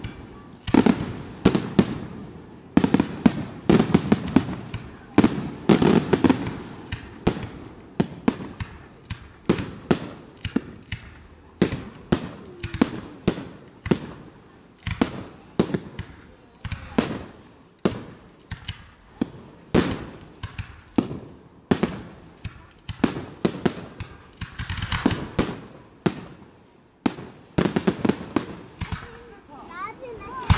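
Aerial fireworks display: a continuous barrage of firework shell bursts, sharp loud bangs coming one or two a second, each trailing off in a short echo.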